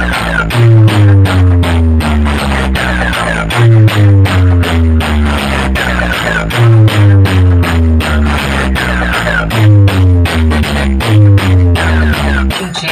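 Loud electronic dance music blasting from a large DJ speaker-box stack: heavy, pounding bass on a steady beat, with a synth line that falls in pitch and repeats about every three seconds.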